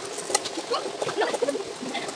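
Metal cooking pots and woks knocking and scraping against each other and the rocks as they are scrubbed, with several sharp clinks.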